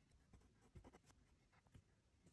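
Near silence with a few faint strokes of a ballpoint pen writing on paper, clustered about a second in and again near the end.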